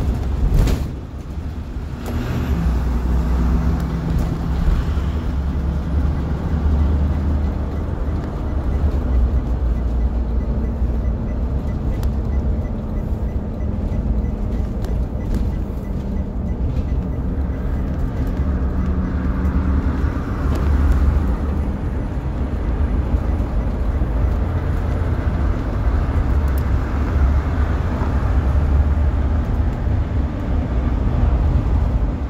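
Inside the cab of a 2008 Blue Bird All American school bus on the move: the rear-mounted CNG engine drones low under steady road noise, its note rising and falling as the bus drives up a freeway on-ramp. A few short clicks and rattles come through, the clearest about a second in.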